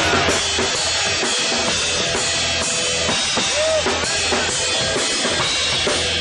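Live rock band playing with the drum kit to the fore: bass drum, snare and cymbals driving the beat under keyboard and guitar, without vocals.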